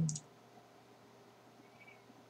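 The tail of a murmured 'un', then a short sharp click just after it, and quiet room tone for the rest.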